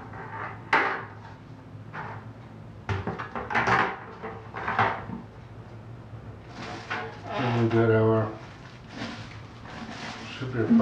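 Knocks and scuffs of cardboard and packed equipment being handled inside an open cardboard shipping box, with several separate sharp knocks in the first half as a metal brew pot is lifted out.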